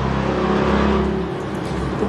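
A motor engine running with a steady low drone that shifts slightly in pitch.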